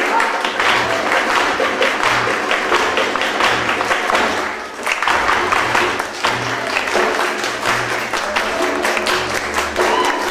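Live flamenco-style music: guitar with a deep frame drum beating about every second and a half, under a group's dense hand clapping along.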